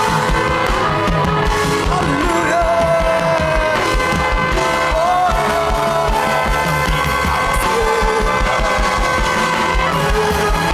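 Live contemporary worship band playing a song, with a steady kick-drum beat under sustained keyboard chords and voices singing the melody.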